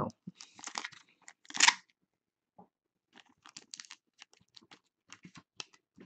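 A thin plastic card sleeve and a rigid plastic toploader being handled: a short rustle, then a louder crinkle of the sleeve before two seconds in, followed by a scatter of small, faint plastic clicks and rustles.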